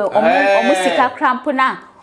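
A woman's voice speaking emphatically, with a long, drawn-out exclamation in about the first second, then quicker talk.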